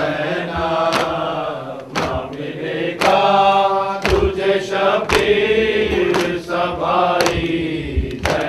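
A group of men chanting a noha, a Shia mourning lament, together. Sharp slaps of hands striking chests (matam) come in time with it, about once a second.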